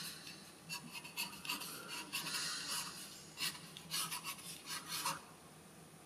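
Pencil scratching across paper in a run of quick sketching strokes that stop about five seconds in.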